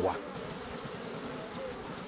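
Steady buzzing hum of a honey bee swarm clustered on the front of a bait hive box as it takes up the hive.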